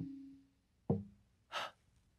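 A pitched tap's ringing fades out, then a single short wooden-sounding knock about a second in, followed by a brief breathy gasp. These are sparse percussion-like sound effects.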